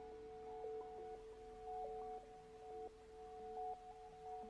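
Quiet sustained drone from a free jazz improvisation: two steady, pure-sounding tones held throughout, with soft short notes stepping up and down around them.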